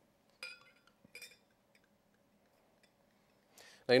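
Two light clinks of glass, about half a second and a second in: a wine bottle touching a tall sparkling-wine glass as the Prosecco pour begins.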